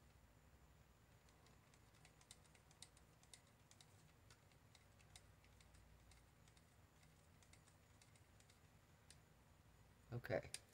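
Near silence, with scattered faint light clicks and taps from gloved hands handling and stirring a plastic cup of pigmented resin.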